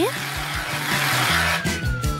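Aerosol can of whipped cream spraying: a long hiss that swells and then cuts off near the end with a thin falling whistle. Light background music runs underneath.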